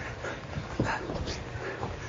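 A few short, sudden sounds from two people sparring in a boxing ring, the clearest about a second in, over a steady low room hum.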